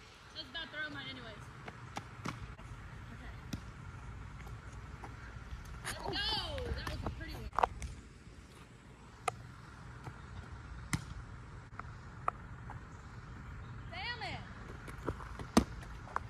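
Outdoor wind rumble on the microphone, with brief far-off shouted calls about six seconds in and again near the end, and a few sharp separate smacks.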